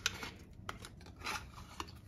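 A small paperboard gift box being opened by hand: faint scraping and a few light clicks and snaps of the cardboard flap as it is pulled open and the contents taken out.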